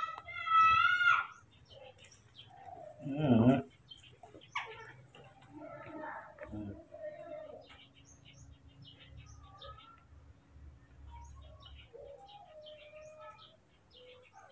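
A baby monkey calling: one loud, high-pitched call with a wavering pitch lasting about a second near the start, followed by a series of faint short squeaks and chirps. A louder, lower voice sound comes about three seconds in.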